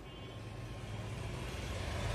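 Low rumble of a motor vehicle, growing steadily louder across the two seconds.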